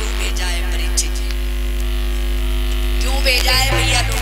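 Steady low electrical mains hum from the microphone and loudspeaker system, running unbroken under a woman's voice heard in the first second and again near the end, with steady held tones above it.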